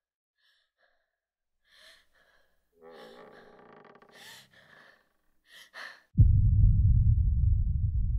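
A frightened girl breathing shakily and gasping twice sharply. About six seconds in, a sudden loud low boom hits and slowly dies away.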